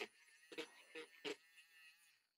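Small battery-powered Badger paint stirrer whining faintly as it spins in a pot of acrylic paint, with three brief knocks along the way; the whine cuts off at the end.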